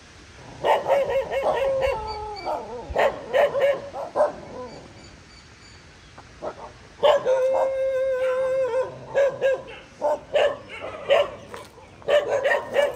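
Several stray dogs barking in bursts, with a quieter lull in the middle and one long held call about seven seconds in before the barking starts again.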